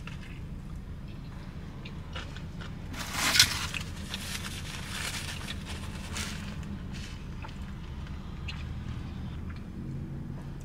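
Person biting into and chewing a bagel sandwich with crisp lettuce and cold toppings, close to the microphone: crunchy, wet chewing, loudest about three seconds in. A low steady hum runs underneath.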